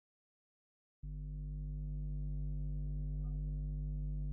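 Steady low electronic hum that starts abruptly about a second in and holds one pitch, with a brief faint higher blip just after three seconds in.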